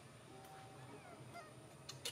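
Near silence: quiet outdoor ambience with a faint steady high-pitched tone and a few faint distant calls.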